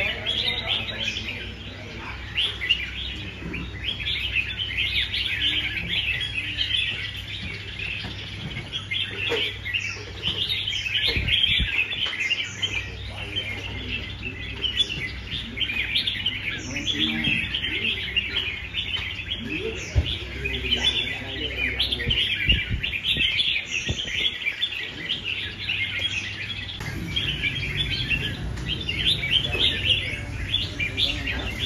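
Several caged red-whiskered bulbuls singing at once, a dense, overlapping chorus of short high chirps and song phrases.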